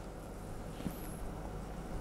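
Faint bite and chewing of a crisp sesame-flour cookie, with one small crunch a little under a second in, over a low steady room hum.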